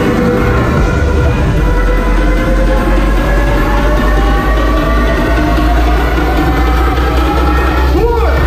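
Loud, bass-heavy electronic dance music from a live DJ set over a venue's sound system, with a deep steady sub-bass under a synth tone that slowly rises in pitch.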